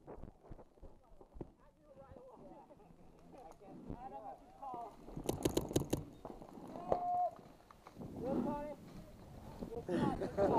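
A paintball marker firing a quick burst of about six shots about five seconds in, with scattered single pops before it. Players shout in the distance, with one long held call near the end, and no words can be made out.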